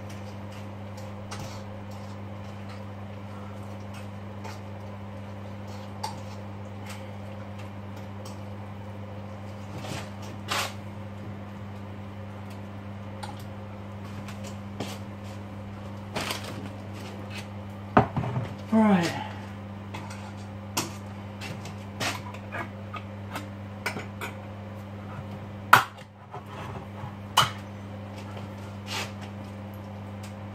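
Dishes, pans and utensils clattering and knocking on a kitchen counter at irregular moments during food preparation, with sharper knocks about 18 and 26 seconds in. A steady low electrical hum runs underneath.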